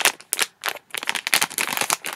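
Foil blind-bag wrapper crinkling and tearing as it is pulled open by hand: a dense run of sharp crackles with short breaks.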